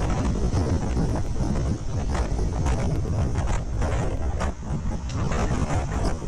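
Heavy wind noise on a motorcycle rider's camera microphone at freeway speed, loud and gusty even though the bike has a windshield.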